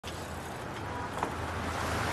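City street traffic noise, with a car driving past close by and growing louder toward the end.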